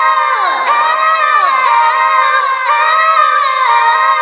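Sped-up, high-pitched a cappella female vocals without clear words: held notes layered with short falling slides about once a second, in a large, echoing arena-like reverb.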